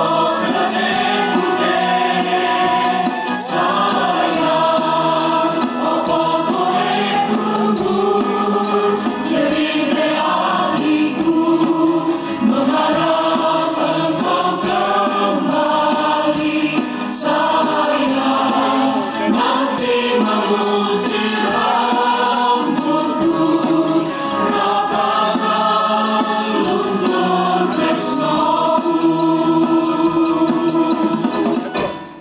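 Indonesian choir singing together into stage microphones, with many voices blended in harmony.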